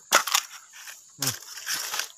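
A bamboo stem being cracked and split open: a few sharp cracks near the start, then a longer splintering tear near the end. A short grunt comes a little after a second in.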